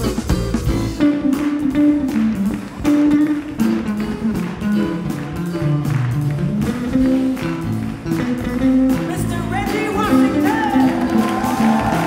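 Live band music: guitar and other plucked strings carry changing notes over steady percussion strokes, and a wavering melodic line enters near the end.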